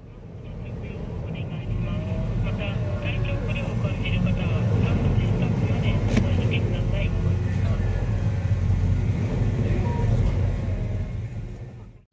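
Passenger ferry's engines running at the pier with a low, steady rumble, with people's voices in the background. The sound fades in over the first two seconds and fades out near the end.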